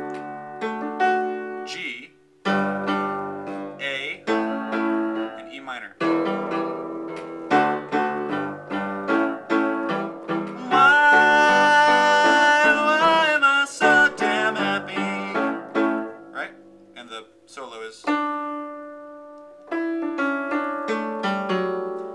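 Piano chords struck in a quick, repeated rhythm through a lively passage. About eleven seconds in, a voice holds one long note for about three seconds over the playing.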